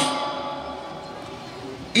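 Pause in amplified speech: the echo of the announcer's voice through the public-address loudspeakers dies away, leaving a faint steady ringing from the sound system that fades out slowly.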